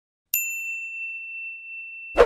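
A single bright ding sound effect for a subscribe-button animation, striking sharply about a third of a second in and ringing on as one clear tone that slowly fades.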